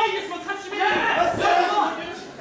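Several actors shouting together on stage, their loud voices overlapping, with the loudest stretch from about a second in.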